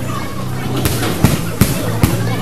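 A few sharp impacts in the second half, the loudest about a second and a quarter in, over voices and a low steady hum.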